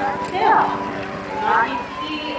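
An announcer's voice carried over a public-address system to an open-air arena crowd, with a thin steady ringing tone underneath.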